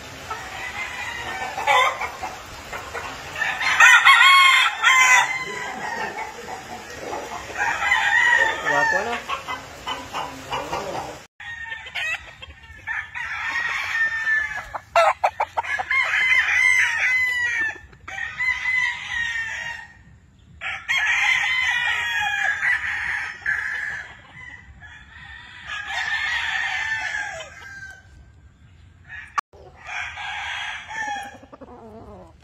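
Gamefowl roosters crowing again and again, a long cock-a-doodle-doo every few seconds, some crows overlapping.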